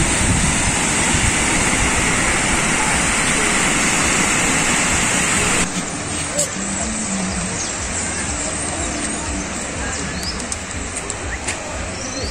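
Beach ambience: a loud, steady rush of surf and wind on the microphone for about the first six seconds. After a sudden cut, quieter surf follows with faint, indistinct voices of people on the beach.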